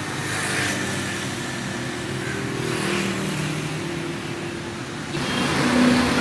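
Road traffic: a motor vehicle's engine running past, its note shifting in pitch over a steady traffic hiss. About five seconds in, women's voices and laughter start over it.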